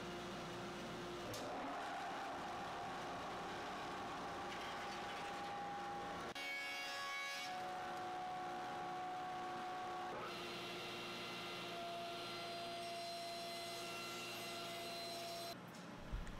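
Shop machinery running steadily: a thickness planer and its dust collector, a constant motor hum with several sustained tones that shifts in character a few times.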